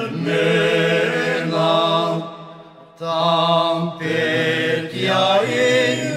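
Music: a group of voices singing long held notes in harmony with vibrato, breaking off briefly about two seconds in before starting again.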